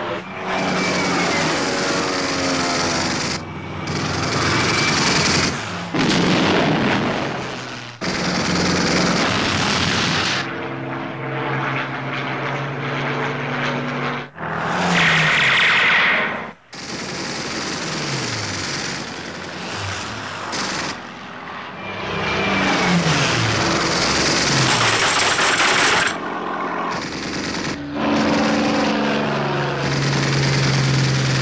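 Engines of WWII piston-engined fighter planes running hard, their note falling in pitch several times as aircraft dive or pass, cut together with long bursts of rapid machine-gun fire. The mix changes abruptly every few seconds.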